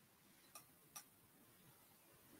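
Near silence with two faint, short clicks about half a second apart, near the middle.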